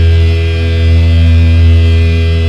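A low, distorted electric guitar note held and left ringing: a loud, steady drone with no rhythm, partway through a heavy metal song.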